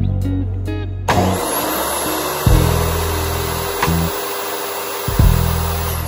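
Electric miter saw switched on about a second in, its motor running with a high whine as it cuts wood. The noise stops near the end.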